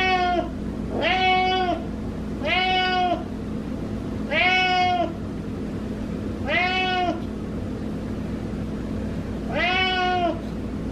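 Domestic cat meowing repeatedly up at its owner: about six drawn-out meows, a second or two apart, with a longer pause before the last one near the end.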